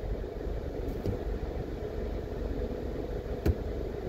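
A car idling while stopped, heard from inside its cabin as a steady low hum, with one sharp click about three and a half seconds in.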